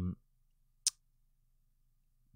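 A single short, sharp click just under a second in, against faint room tone.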